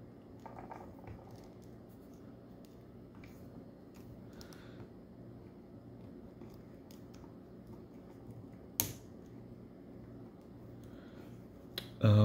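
Plastic action figure, a Power Rangers Lightning Collection White Ranger, being handled and posed: faint clicks and rubbing from its joints, with one sharp click about nine seconds in, over a low steady hum.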